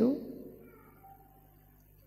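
A woman's voice through a microphone ends a word with a rising pitch in the first moment, then fades away in the room's echo, leaving only faint room hum.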